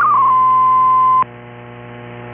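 MFSK-64 digital data signal received on shortwave AM. Its stepping tones settle on one steady tone for about a second as the transmission ends. The tone cuts off suddenly, leaving a low hum and hiss from the receiver.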